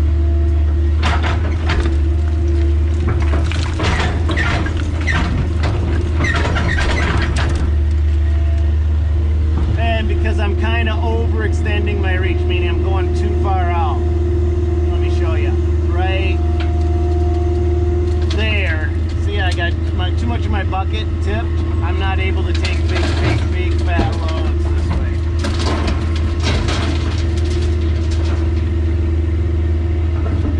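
An old Kobelco 150–160 class excavator's diesel engine running steadily under load, heard from inside the cab as a low drone with a steady higher hum above it. In the first several seconds there is a run of knocks and clatter as the bucket digs through dirt and broken rock.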